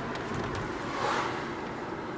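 Car driving, heard from inside the cabin: steady engine and road noise, with a brief swell about a second in.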